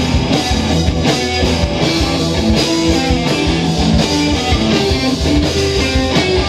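A live indie rock band playing loud and steady, with electric guitar over a driving drum kit and sustained low notes underneath.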